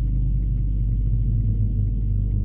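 Car interior at highway speed picked up by a dashcam microphone: a steady low rumble of tyres and engine, with a faint hum from the engine.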